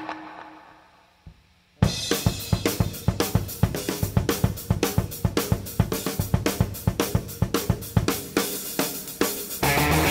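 Rock drum kit playing alone in a studio take: snare, bass drum and hi-hat or cymbals in a fast, even beat, starting about two seconds in after a near-quiet gap. Just before the end the electric guitar and bass come in with the full band.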